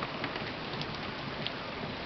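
Heavy rain pouring down on a flooded lawn, a steady hiss with a few louder drips.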